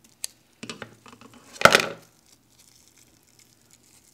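Plastic sausage wrapper being cut and peeled open by hand, crinkling and rustling, with one louder crinkle about a second and a half in.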